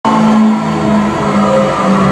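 Loud music of steady held notes that change pitch about every half second, opening the performance soundtrack.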